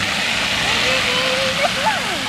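A car driving past on a rain-soaked road, its tyres hissing through the water on the asphalt. A child's high voice calls out over it in the second half.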